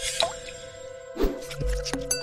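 Electronic jingle of a TV sponsor bumper: a steady synth chord with a quick falling sweep just after the start and a low hit a little past one second in.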